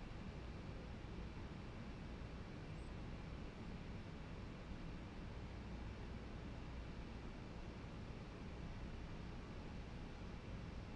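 Faint, steady room tone: a low hum with a light hiss, with no distinct sounds standing out.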